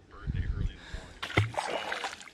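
A small largemouth bass dropped back into the lake from just above the surface: one short, sharp splash about a second in, after a low rumble near the start.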